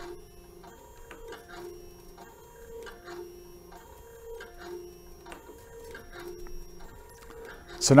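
Grundfos Smart Digital DDA diaphragm dosing pump running, its stepper motor whining in a regular cycle of two alternating pitches, stroke after stroke, with faint ticks. It is pumping against raised back pressure from a partly closed discharge valve, the motor speed adjusted to hold the set flow.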